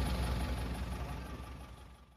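Lorry engine idling with a steady low rumble, heard from inside the cab, fading away toward the end.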